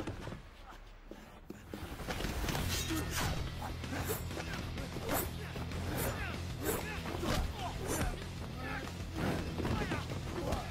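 Film fight-scene soundtrack: a music score with a steady low bed, quieter for the first second and a half. After that comes a quick run of punch and body-impact hits with whooshes, about one or two a second, mixed with fighters' grunts.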